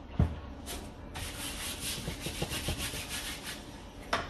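A palette knife scraping oil paint in quick repeated strokes for about two and a half seconds, after a single thump right at the start.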